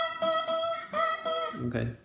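Rogue Classic Spider resonator guitar played with a glass slide: the same high note on the first string rings, then is plucked again about a second in. It carries a slight buzz, which the player puts down to the string's nut slot being cut deeper than the others, so the slide cannot press it firmly.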